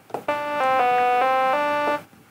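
Sawtooth-wave tones from a simple one-oscillator software synth with a key-following filter, played as a short run of about five held notes that step in pitch every quarter to half second, then stop.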